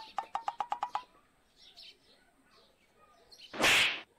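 Mobile phone touchscreen keypad beeping quickly, about eight short taps in the first second as a number is dialled. Faint bird chirps are heard throughout, and a brief loud rush of noise comes near the end.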